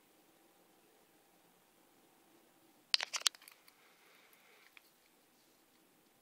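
Quiet room tone broken about halfway through by a short cluster of sharp clicks, with a couple of faint ticks a little later: a resin G-Shock watch being handled and turned over in the fingers.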